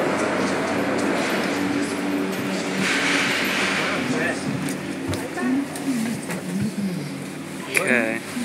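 Gondola cable car station machinery humming steadily as the cabin moves off through the station, with a rush of noise a few seconds in. Voices talk over it in the second half, and a sharp knock comes near the end.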